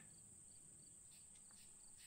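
Near silence, with faint crickets chirping steadily in the background.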